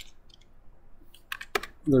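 Computer keyboard typing: a few faint key clicks near the start, then a quick run of keystrokes about a second and a half in.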